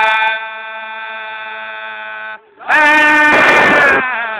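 Male chanting of a Sufi zikr: a phrase ends in one long held note, breaks off briefly, and a loud new phrase starts about three seconds in, with a rough rush of noise over it near the end.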